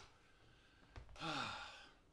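A man's voiced sigh, about half a second long, falling steadily in pitch. A soft knock comes just before it.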